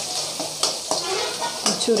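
Sliced onion and leaves sizzling in hot oil in a metal kadai, stirred with a steel slotted ladle that scrapes and clicks against the pan a few times.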